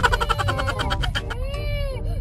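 A young girl crying hard in long, drawn-out wails, loudest at the start, with a car cabin's low rumble beneath.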